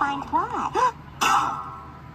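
A man's wordless voice from an animated film, heard through a laptop speaker: a short rising-and-falling exclamation, then a harsh burst about a second in.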